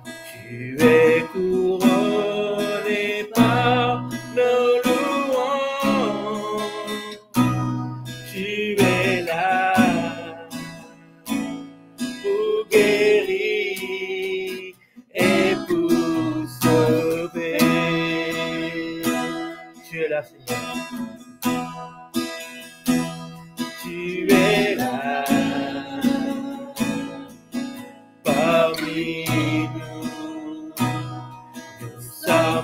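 Acoustic guitar strummed as accompaniment to a man and a woman singing a worship song, with a brief break in the sound about halfway through.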